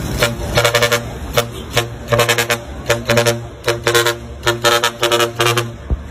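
Isuzu heavy truck's multi-tone horn sounding a rhythmic run of about ten short and longer blasts, like a tune, over a steady low hum.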